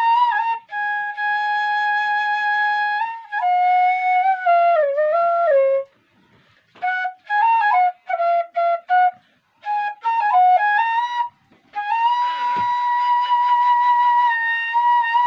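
Bansuri, a side-blown bamboo flute, playing a slow solo melody of held notes with slides between them, broken by a few short pauses for breath. Near the end it settles on one long held note.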